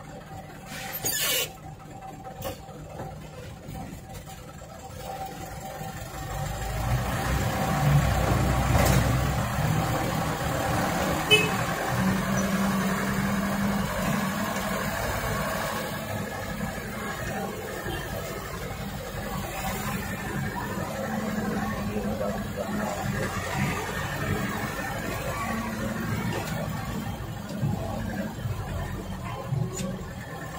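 Truck engine heard from inside the cab while driving slowly over a rough dirt road, growing louder about six seconds in as it picks up, then running at a steady drone. A sharp knock about eleven seconds in.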